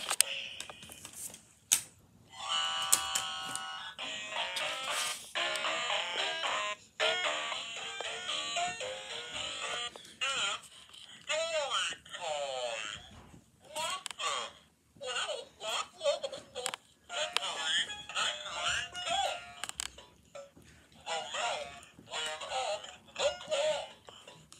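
Electronic baby book toy playing its recorded voice and jingle phrases in short bursts with gaps between, running on weak batteries that make it sound "demonic".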